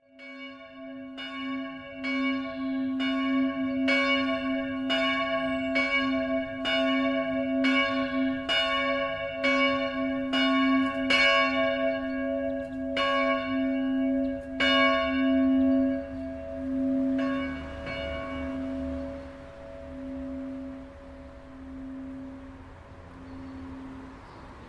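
A church bell ringing: a rapid series of strokes, about one and a half a second, each ringing on with a strong low hum. The strokes stop about two-thirds of the way through, and the hum goes on fading.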